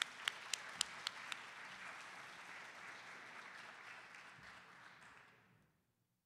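Audience applauding, fading away over about five seconds. In the first second or so, a few sharper single claps come from close to the microphone.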